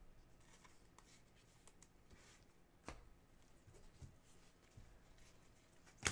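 Near silence with faint rustling and small clicks of trading cards being handled and slid against each other, one sharper click about three seconds in.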